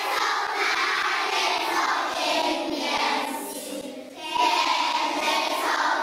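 A group of children singing together. The singing dips briefly about four seconds in and then picks up again.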